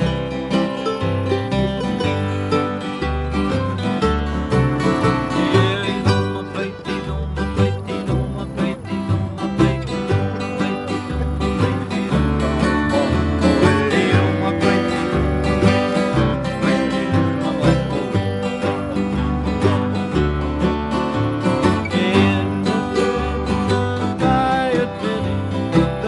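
Acoustic bluegrass-style jam: mandolin and acoustic guitar picking over a plucked upright bass, an instrumental passage with no singing.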